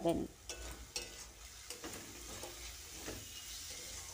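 Onion-tomato masala with freshly added ground spices frying with a faint sizzle in a kadai, with scattered scrapes of a spatula stirring it.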